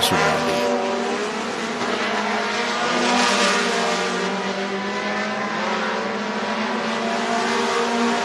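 Pure Pony dirt-track race cars with four-cylinder, Pinto-style engines running laps, with a steady engine note that swells briefly about three seconds in as a car comes closer.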